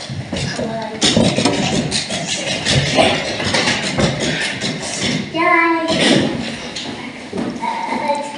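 Indistinct talking by several people in a large, echoing hall, with one high, drawn-out voiced call about two-thirds of the way through.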